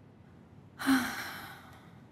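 A woman sighs once, about a second in: a breathy exhale with a short voiced start, fading out over about a second.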